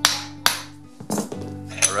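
Two hammer blows, about half a second apart, on a small steel plate clamped in a bench vise, flattening a 90-degree bend. Each strike rings briefly.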